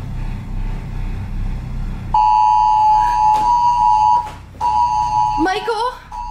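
A recorded song playing back. It opens low and rumbling, then a loud steady high tone comes in about two seconds in, drops out for a moment, and returns. A gliding voice enters near the end.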